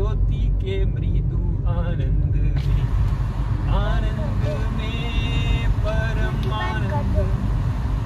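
Steady low rumble of a car's engine and tyres heard from inside the cabin while driving through a road tunnel. A person's voice comes over it from about halfway through.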